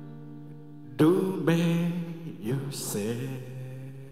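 Acoustic guitar and a male voice in the closing bars of a ballad. A held chord fades for about a second, then a new strum comes in with a wordless sung line over it.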